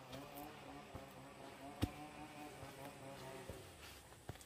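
A flying insect buzzing close by in low droning pulses, about five a second. Footsteps on a dirt forest path give scattered clicks, with one sharp, loud snap, like a twig breaking underfoot, a little before halfway.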